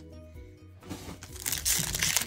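Foil Pokémon booster pack crinkling as it is handled, starting about a second and a half in, over faint background music.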